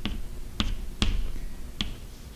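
Chalk writing on a chalkboard: four sharp taps of the chalk striking the board, spaced about half a second apart, with faint scraping between.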